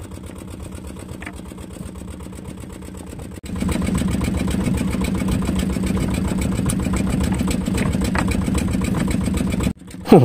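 Small fishing boat's engine running steadily while the gill net is hauled in over the roller, with a low, fast-pulsing drone. It is much louder from about three and a half seconds in, then cuts out briefly just before the end.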